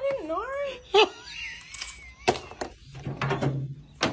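A person's voice wavering up and down in a wailing laugh over the first second, then a run of sharp knocks and clatter in the second half.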